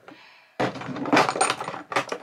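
Clattering and clinking of small containers being handled and knocked together, a rummage among skincare bottles and jars, starting about half a second in.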